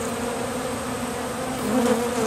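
Many honey bees buzzing around an open hive: a steady hum with a slightly wavering pitch. The colony is defensive and really aggressive.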